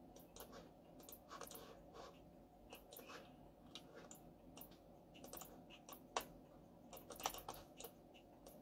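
Quiet, irregular clicks and taps of a computer keyboard and mouse, with a sharper click about six seconds in and a quick cluster of clicks about seven seconds in.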